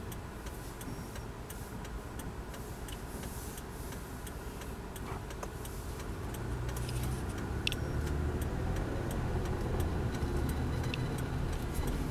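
Inside a car: the turn-signal indicator ticking evenly while the car waits, then the engine and road rumble grow louder from about six seconds in as the car pulls away and turns.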